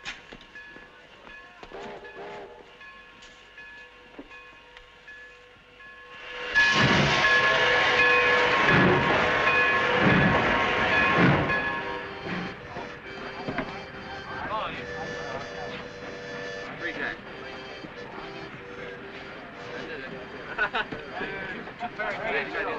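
Steam train in a station: a loud rush of steam with slow, heavy pulses sets in about six seconds in and runs for several seconds, then falls away to the murmur of passengers' voices in a crowded railway carriage.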